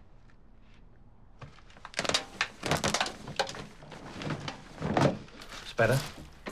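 A quick run of knocks and thuds, bunched from about two seconds in, with a brief voice near the end.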